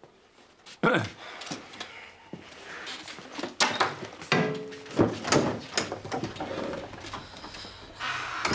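A man clears his throat about a second in. Scattered short knocks, shuffles and brief vocal sounds follow in a small room.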